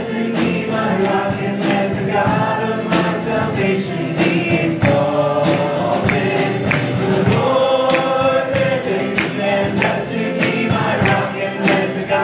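Live worship band playing with several voices singing together, over acoustic guitar, keyboard, congas and a drum kit keeping a steady beat.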